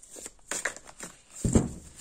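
A thick deck of large Dixit cards being split and shuffled by hand: quick clicks and rustles of card edges, with a soft thump about one and a half seconds in.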